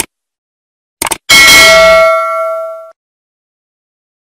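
End-card sound effects: quick mouse-click sounds, then a single loud bell ding that rings with a few clear tones, fades and cuts off about a second and a half later.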